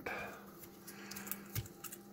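Faint rustling and light ticks of green painter's tape being handled and pressed down onto a circuit board, over a steady low hum.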